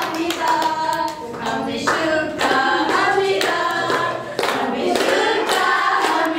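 A group of women and children singing a devotional bhajan together, clapping their hands along to a steady beat.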